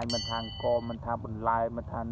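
A man talking, with a short bell-like ding right at the start that rings for just under a second: the sound effect of an animated subscribe-button overlay.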